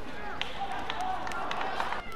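Badminton rally on an indoor court: several sharp racket strikes on the shuttlecock and squeaking shoes on the court surface, with arena background noise.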